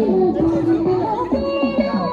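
Several young people's voices chattering and calling out together, over background music.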